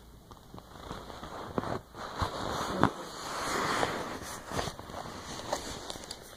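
Handling noise from a phone being moved about while it records: rustling and crackling with a few sharp clicks and knocks, and a longer swell of rustling in the middle.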